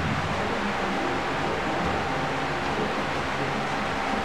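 Steady rushing noise of a running electric fan, with a faint steady tone above it.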